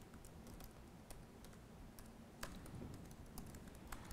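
Faint, scattered keystrokes on a computer keyboard, a few separate clicks a second apart or more.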